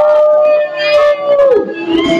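A woman singing karaoke holds one long, loud note into the microphone, which drops away about a second and a half in.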